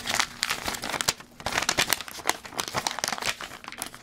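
White paper wrapping of a small package being torn open and unfolded by hand: a dense, continuous run of paper crinkling and tearing.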